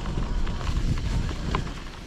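Home-built e-bike riding over a bumpy, overgrown grass track: a steady low rumble of wind and tyres with irregular knocks and rattles as the bike jolts over the rough ground, one sharper knock about one and a half seconds in.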